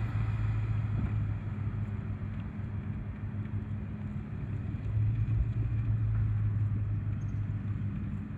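A car driving slowly along a street: a steady low engine hum with tyre noise, a little louder about five seconds in.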